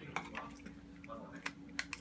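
Scattered light clicks and taps from kitchen items being handled, a can of condensed milk, a spoon and foam cups, over a faint steady hum.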